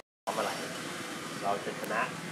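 A brief dead-silent gap at an edit, then steady background hiss with faint snatches of people talking.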